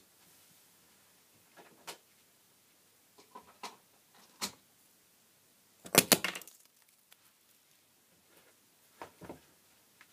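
A small plug-in mains power supply blowing up when switched on: a sharp bang with a crackle of sparking about six seconds in, lasting about half a second. A few faint clicks come before it.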